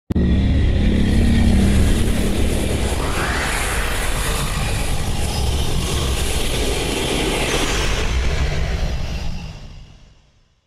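Video-intro soundtrack: music under a dense rumbling whoosh that cuts in suddenly, with a rising sweep about three seconds in, fading out near the end.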